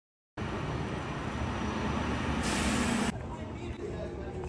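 City street traffic noise that begins abruptly a moment in, with a short loud hiss about two and a half seconds in that cuts off sharply.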